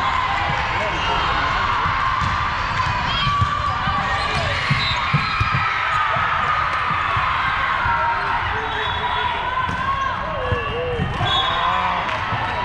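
Volleyball play on a hardwood court in a large, echoing sports hall: balls being hit and bouncing, and sneakers squeaking on the floor, over a constant hubbub of voices. A short whistle sounds near the end.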